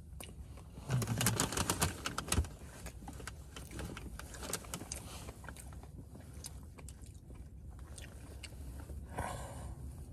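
Close-up chewing of a soft frosted doughnut: wet mouth clicks and smacks, loudest and densest for about a second and a half near the start, then quieter chewing, with a fresh bite near the end.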